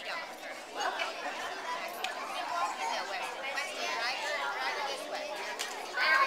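Indistinct chatter of a group of children, several voices at once with no clear words.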